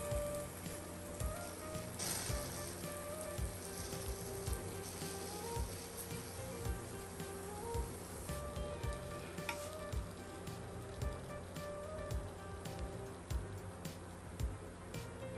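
Cinnamon roll dough sizzling inside a mini waffle iron held pressed shut, over soft background music with a steady beat.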